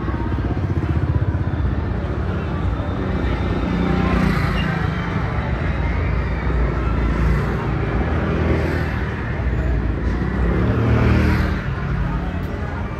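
Street traffic: small motor scooters passing close by over a steady low rumble. Engine sound swells and fades twice, about four seconds in and again near the end.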